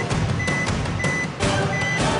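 Dramatic suspense music cue with heavy low pulsing hits and three short high electronic beeps about two-thirds of a second apart, sounding while the weigh-in scale's display rolls through numbers before showing the weight.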